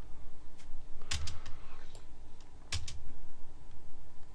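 Computer keyboard and mouse clicks, a few at a time: a short cluster a little after a second in and a pair near three seconds in, over a faint low hum.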